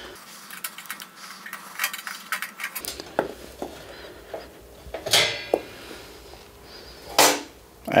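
Small screws being taken out of a mixer's panel and handled: scattered light metallic clicks and ticks, with a brighter clink that rings briefly about five seconds in and a sharp knock about seven seconds in.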